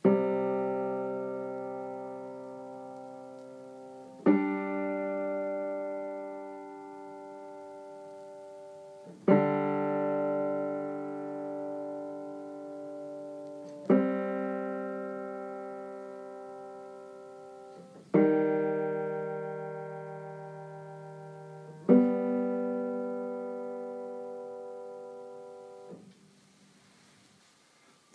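Acoustic piano playing six two-note intervals one after another, each struck and left to ring and die away for about four seconds. They are pairs of like intervals above and below a single test note, played as a tuning test so their beat rates can be compared to check whether that note is in tune.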